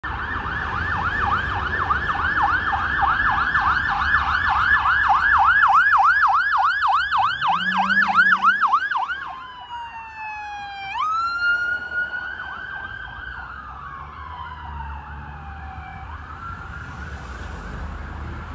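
Police car electronic sirens on a code 3 run: a loud, fast yelp of about three to four sweeps a second, changing about nine seconds in to a slow wail that rises and falls and fades away, over traffic rumble.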